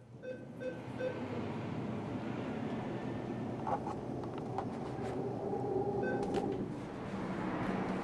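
Steady hum and murmur of a bank ATM lobby, opening with four short evenly spaced beeps in the first second. A few sharp clicks and a brief held tone come later.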